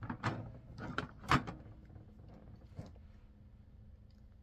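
Plastic wrestling action figures handled in a toy ring: several light knocks and clatters in the first second and a half, the loudest about a second and a half in, then one more faint knock later on.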